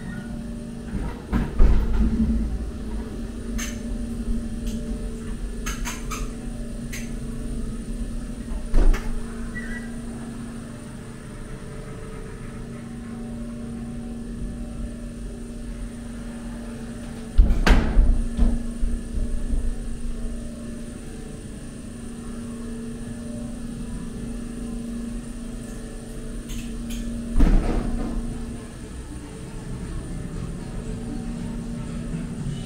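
Ghost train ride car running through its dark ride with a steady hum and rumble. Four loud clattering bangs come about 2, 9, 18 and 27 seconds in.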